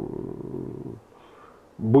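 A man's drawn-out, creaky hesitation sound, a low rasping "ehh" filler, for about a second; after a short pause his speech resumes near the end.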